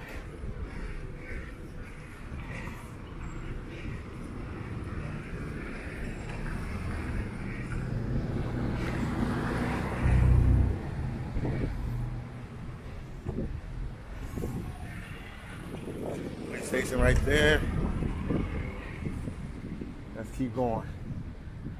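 Street noise while cycling: a steady low rumble of wind on the microphone with traffic around it, swelling to a loud rush about ten seconds in. A voice is heard briefly near the end.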